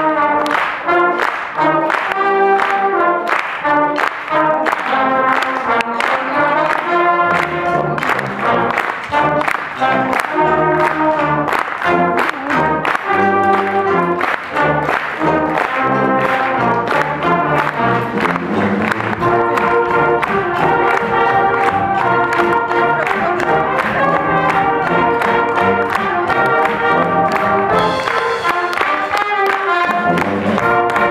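Youth fanfare band of brass, saxophones and drums playing a swing number over a steady drum beat. A low bass line comes in several seconds in, and from about two-thirds of the way through the band moves to longer held chords.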